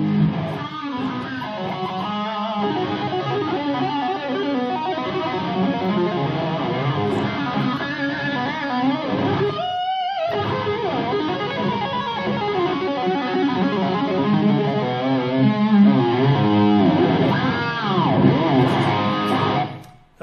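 Overdriven electric guitar through an amplifier, played fast with two-handed tapping to show how the tapping hand works as an extension of the fretting hand. The notes run continuously with bends and wavering pitch, break off briefly about halfway, and stop abruptly at the end.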